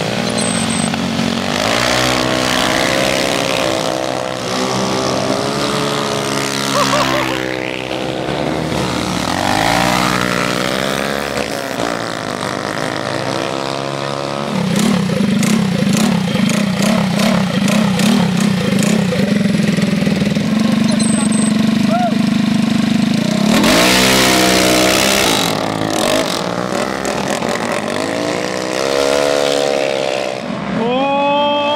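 Small scooter and mini-bike engines revving, the pitch rising and falling again and again. Past the halfway point an engine holds a loud, steady high rev for about nine seconds. A burst of rushing noise breaks in, then the revving rises and falls again.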